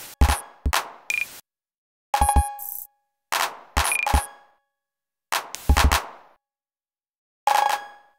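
Sparse, irregular electronic beat built from drum-machine samples: clusters of deep 808-style kick thumps, clap and glitchy clicks, with two short high beeps. Each cluster trails off in quickly fading echoes, and the hits are broken up by silent gaps where events are randomly dropped.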